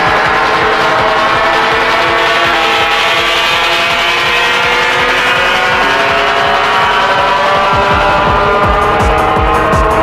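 Hard tekno DJ mix: a dense, distorted synth chord held over a driving kick drum, with the kick coming back in harder about eight seconds in.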